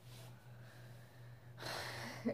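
A sharp intake of breath near the end, just before speaking again, over a steady low hum.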